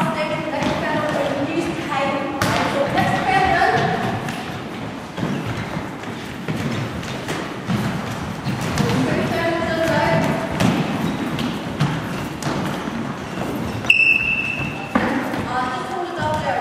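Players' voices calling over the thuds of a Gaelic football being handpassed, caught and landing on a wooden hall floor, with footsteps. Near the end comes a brief high whistle.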